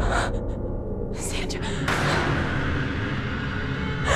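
A woman gasping in terror, three sharp breaths about a second apart, over a low droning horror score.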